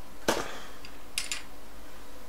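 A few sharp clicks from vape hardware being handled while coils are readied for dry-firing: one about a quarter second in, then two quick ones just past a second.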